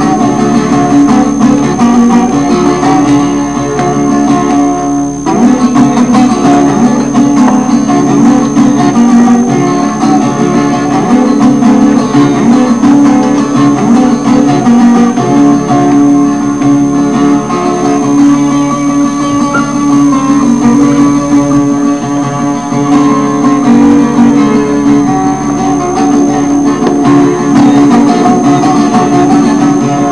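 Acoustic guitar played as an instrumental, with continuous plucked picking and a short dip about five seconds in.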